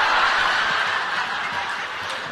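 A large audience laughing together, loudest at the start and slowly dying away.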